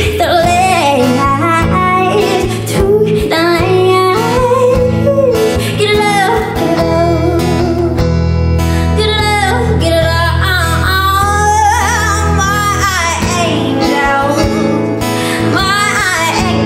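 A woman singing a song live with a band, her voice over guitar, low sustained notes and drums.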